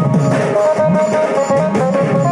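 Koraputia Desia folk music for the Dhemsa dance: a drum beat of low strokes that bend in pitch, about two a second, under a steady high melody that steps from note to note.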